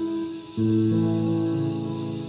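Digital piano playing a slow hymn: a chord with a low bass note is struck about half a second in and held, ringing on.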